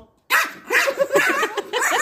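A small Pomeranian barking in rapid, repeated yaps at an unwelcome person, starting a fraction of a second in.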